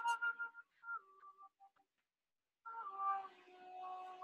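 A solo wind instrument playing a slow, breathy melody of long held notes with slides between them. A phrase ends about half a second in and a few short notes follow. After a brief pause, a new phrase begins past the middle.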